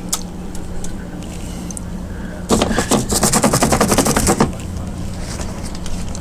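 Paintbrush bristles scrubbed rapidly back and forth on a gesso-primed canvas panel: a few scratchy strokes, then a quick run of about ten strokes a second for about two seconds in the middle.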